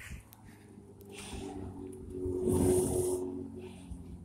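A person breathing hard after walking up a steep hill: two breathy exhales, one about a second in and a louder one past the middle, over a steady low hum.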